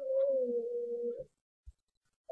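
A young girl singing one long held note that wavers slightly in pitch and stops a little past halfway, followed by a faint knock.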